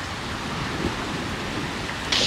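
Steady, even hiss of outdoor background noise, with no tone, rhythm or sharp sound standing out.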